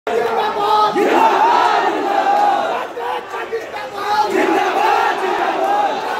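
A crowd of students shouting together in protest, many voices at once. The shouting dips briefly around three seconds in, then swells again.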